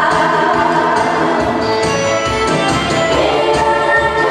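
A woman singing a Korean popular song into a handheld microphone over instrumental accompaniment, amplified through the stage sound system.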